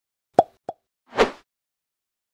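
Intro sound effect as a title logo appears: two short pops about a third of a second apart, then a brief swell of noise.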